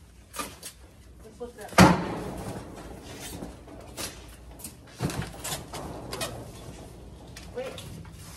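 A large plastic-wrapped piece of furniture being tipped upright and set on a moving dolly: one loud thump with a short echo about two seconds in, then lighter knocks and scuffs as it is settled and the dolly starts rolling.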